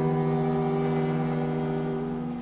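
Contemporary chamber music: a sustained chord of steady held low notes from the ensemble, with a woman's voice holding a note that ends near the end.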